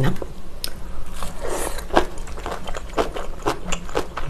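Close-up chewing of crunchy food, a pork-belly gimbap with cucumber, pickled radish and whole hot pepper, and cabbage kimchi: irregular sharp crunches, several a second.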